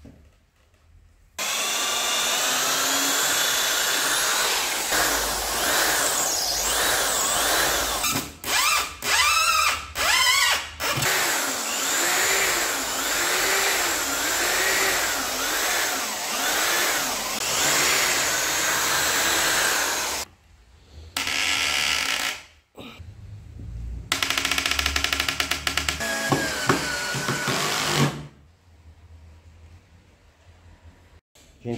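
Corded electric drill boring holes through a laminated board tabletop. It runs for a long stretch with a few quick stops and restarts, the motor pitch rising and falling as the bit bites, then two shorter runs near the end.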